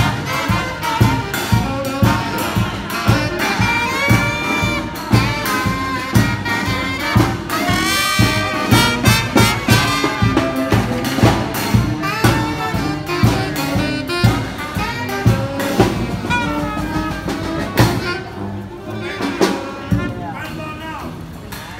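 Jazz music with brass horns (trumpet and saxophone) playing melodic lines with bent notes over a steady beat. It thins out near the end.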